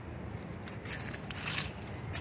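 Footsteps crunching and crackling through dry fallen leaves on a paved path, a few crisp bursts with the loudest about a second and a half in, over a steady low background rumble.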